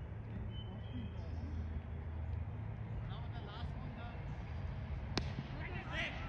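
A cricket bat striking the ball once, a single sharp crack about five seconds in, heard from a distance across the field over a steady low rumble.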